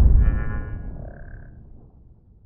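Logo-intro sound effect: the tail of a deep cinematic boom fading away, with a brief high shimmering tone over it in the first second.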